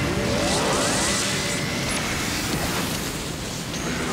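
Anime battle sound effects for a spinning-top special attack: a pitched whine that climbs steeply during the first second, over a dense, steady rushing rumble.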